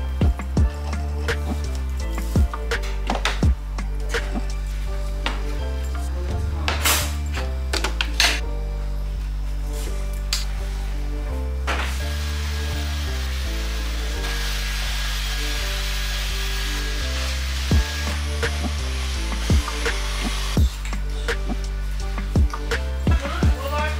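Background music with a steady bass line. Over it come scattered light knocks and clinks of objects being handled, and a cordless stick vacuum runs with a steady high whine for about five seconds from about halfway through.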